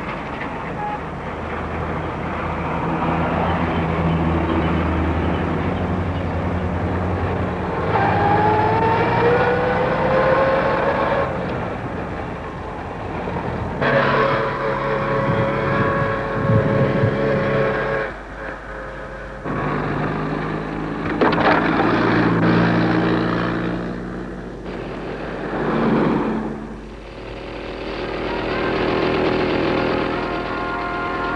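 Car engines running and accelerating on the road, in a string of shots cut together. An engine note rises as a car speeds up about a third of the way in, and the engine sound changes abruptly at several cuts.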